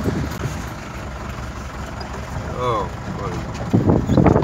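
Jeep's engine and road noise heard from inside the cabin while driving, a steady low rumble.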